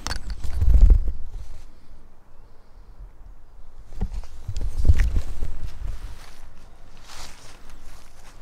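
Footsteps on a path covered in dry leaves, with two spells of loud low rumble on the microphone: the first about half a second in, the second from about four to six seconds.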